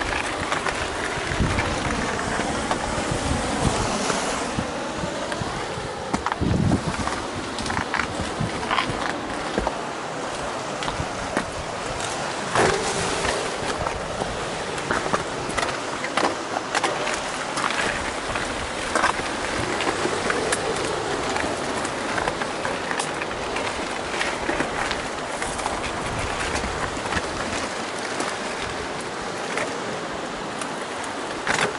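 Mountain bike ridden fast over a dirt and stony singletrack: steady rushing noise of tyres and air, with frequent sharp clicks and rattles from the bike jolting over stones and ruts.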